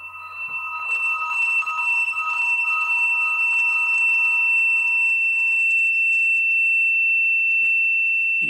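A steady, high-pitched electronic tone that swells up over the first second and then holds. A fainter pair of lower, wavering tones fades out about halfway through.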